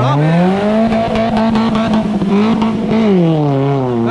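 Maruti Suzuki Gypsy engine revved hard with the 4x4 stuck in deep mud: the pitch climbs in the first half second, is held high for a couple of seconds, then drops back near the end as the throttle is eased.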